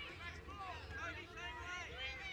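Several high-pitched voices shouting and calling over one another, too indistinct to make out words, from young players and spectators during play. A low, steady rumble runs underneath.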